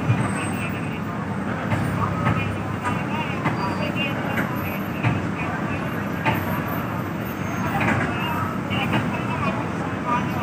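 Steady engine and road noise of a bus, heard from inside the passenger cabin, with voices faintly in the background.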